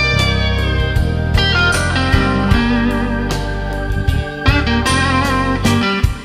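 Instrumental break of a slow electric blues: a lead guitar plays long notes that bend down in pitch and waver with vibrato, over bass and drums.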